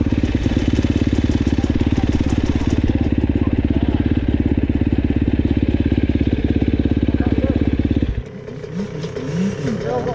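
Dirt bike engine idling close by with a steady, fast pulse, then cutting off suddenly about eight seconds in. Muffled voices follow.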